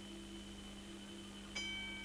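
Starting-stall bell ringing as the barrier gates spring open at the start of a horse race, coming in suddenly about one and a half seconds in with a clang and ringing on. A steady low hum runs underneath.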